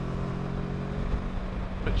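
Kawasaki Versys 650 parallel-twin engine running at a steady cruise, its even drone heard together with wind and road noise from the rider's position.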